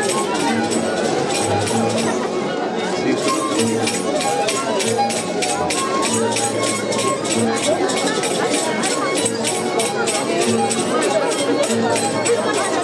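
Traditional Andean festival music with a fast, steady beat and held melody notes, over the chatter of a surrounding crowd.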